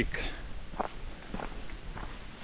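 A hiker's footsteps on a dirt forest trail, a few soft separate footfalls.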